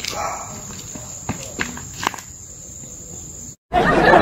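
Crickets trilling in one steady high note, with a few faint clicks and shuffles underneath. Near the end the sound cuts out for a moment and a much louder noisy sound takes over.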